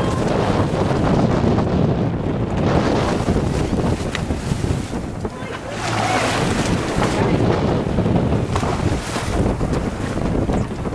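Wind buffeting the microphone over sea water rushing and washing along the side of a boat, steady throughout.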